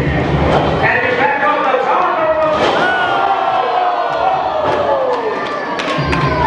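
Thuds of a wrestler's body hitting the ring mat as he is thrown down, under spectators' shouts and cheers, with one long yell falling in pitch through the middle.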